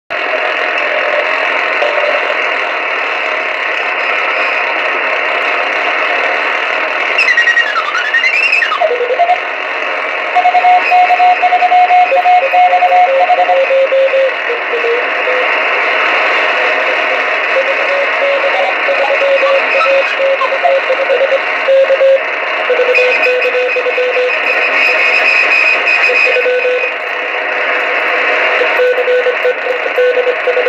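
Radio receiver tuned to the RS-44 satellite's downlink, giving a steady hiss of band noise with Morse code (CW) tones keyed on and off in dots and dashes. A whistle glides down and back up about eight seconds in.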